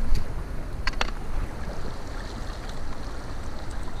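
Shallow river running over stones: a steady rush of water with a low rumble underneath. A couple of light clicks about a second in.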